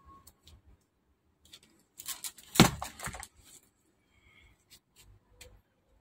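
Small handling noises from hand work at a repair bench: scattered light clicks, with a short burst of rustling and clicking about two and a half seconds in.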